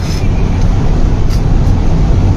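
Steady low rumble of a car or van heard from inside its cabin.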